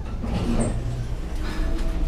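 Hotel passenger elevator running with a steady low rumble as the car comes to its floor, then its stainless-steel doors slide open toward the end.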